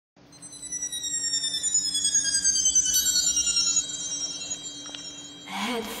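Chime-like shimmering tones, several sounding together, gliding slowly downward in pitch over a steady low hum. They swell over the first few seconds and fall away about four seconds in. Music with a voice starts near the end.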